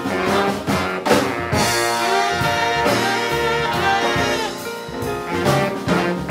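Jazz band's horn section, trumpet with baritone, alto and tenor saxophones, playing an instrumental passage over a rhythm section, with frequent sharp hits throughout.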